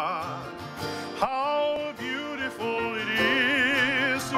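A man singing with strong vibrato over a strummed acoustic guitar. His voice slides up into a new phrase about a second in and holds a long wavering note near the end.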